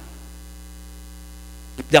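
Steady electrical mains hum in the microphone and sound-system chain: a constant low drone with a ladder of higher steady tones above it, heard in a gap between words. A man's voice comes back near the end.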